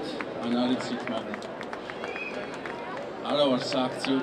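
People's voices talking against outdoor street background noise, louder for a moment about three seconds in.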